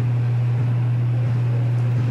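Steady low-pitched hum with a faint hiss over it, unchanging throughout.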